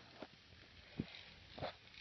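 A few faint, short clicks, three in all, over a low hiss, as a small toy electric train runs along its plastic model track.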